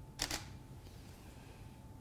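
Digital SLR camera shutter firing once: a quick double click of mirror and shutter about a quarter second in.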